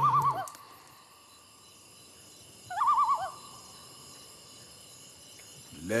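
An owl calls twice, each a short trembling call of about half a second with a wavering pitch. The second comes about three seconds after the first, over a faint steady night hiss.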